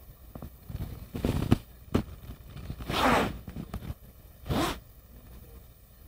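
A few short scraping, rustling rasps, the loudest about three seconds in, with a sharp click near the two-second mark.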